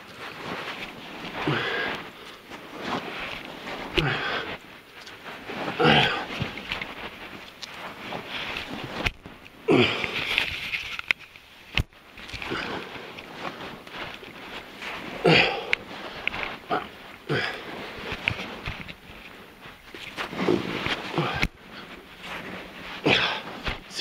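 A man breathing hard and grunting with effort as he crawls through a tight lava-tube passage, with scrapes and rustles of his body and clothes against rock and sand. The loudest bursts come every two or three seconds.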